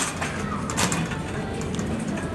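Wire shopping cart being pushed along a supermarket floor, rolling with a steady rattle and two sharp clacks, one at the start and one just under a second in.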